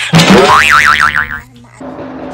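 A cartoon-style 'boing' sound effect: a loud springy tone that wobbles rapidly up and down in pitch for about a second, then stops, followed by quieter steady background noise.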